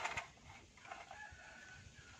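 A faint, drawn-out bird call, crow-like, over quiet room tone.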